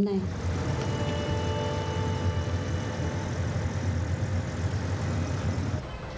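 Steady city traffic ambience: a low rumble of engines with a faint hiss and a few faint steady tones above it, cutting off abruptly near the end.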